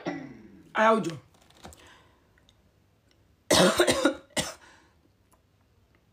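A woman makes two short wordless voice sounds near the start, then coughs loudly about three and a half seconds in, with a second, shorter cough just after.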